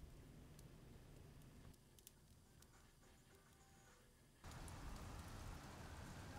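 Near silence: a few faint ticks from the wood fire burning in the fireplace. About four and a half seconds in, a cut to a faint, steady outdoor hiss of light rain.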